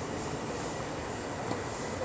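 Steady outdoor background rumble, with a single faint knock of a tennis ball about one and a half seconds in during a rally.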